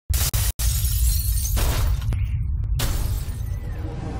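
Intro sound effects: a deep, steady low rumble under loud bursts of crashing, shattering noise that cut in and out, with two short dropouts in the first half-second.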